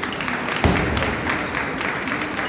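Audience applauding in a sports hall as a table tennis point ends, with a single dull thump about two-thirds of a second in.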